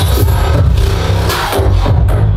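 Loud electronic dance music with heavy bass, the bass line coming in right at the start as the track drops.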